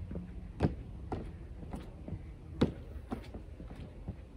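Feet landing on plastic aerobic steps during weighted step-ups: about six uneven knocks, two of them louder.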